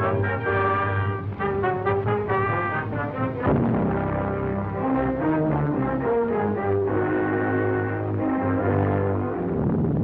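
Orchestral title music of an old film serial, brass to the fore, with melody notes moving in steps over a held low note and a swell about three and a half seconds in.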